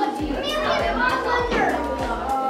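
Several children talking and chattering at once in a room.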